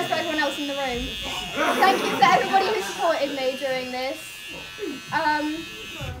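Electric hair clippers buzzing steadily as they shave a head, cutting off at the very end.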